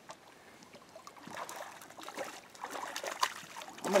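Water splashing and sloshing at the bank as a hooked brown trout thrashes at the surface, in irregular spurts that grow louder over the last few seconds.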